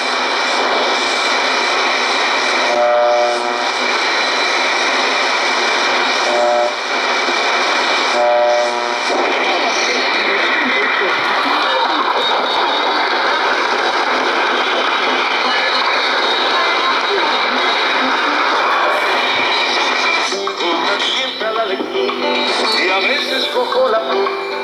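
Icom communications receiver tuned across the 25-metre shortwave broadcast band in AM: a steady rush of static and noise, broken by brief tones about 3, 6½ and 8½ seconds in as the dial passes signals. Near the end a station's audio starts to come through the noise.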